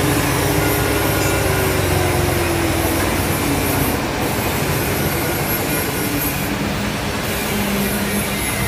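TVS Apache RTR's single-cylinder engine idling in neutral, its speed slowly falling as the carburetor's idle screw is backed off toward a 1,000 rpm idle, the last step of setting the mixture.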